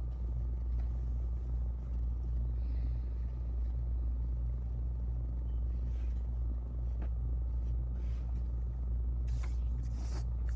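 Steady low room rumble with a faint hum behind it, and a few faint ticks, likely the pencil on the paper and desk.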